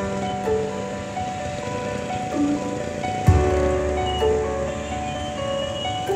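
Background music with held keyboard-like notes and a slow melody; a deeper bass chord comes in about halfway through.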